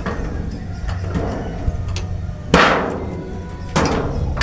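Wooden rabbit hutch cage door with a wire-mesh front being opened: a loud knock about two and a half seconds in, with a brief ring after it, and a second knock near the end.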